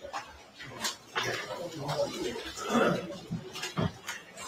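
Scattered clicks and knocks of people handling papers and moving about a room, with faint murmured voices, loudest about three seconds in.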